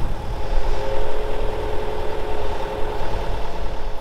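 Lifting crane's engine running steadily under load, with a steady whine from its winch as the strops take the strain of the sunken narrowboat.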